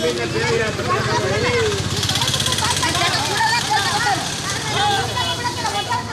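Women's voices talking over a motor vehicle engine that runs steadily, its sound swelling for a second or so about two seconds in.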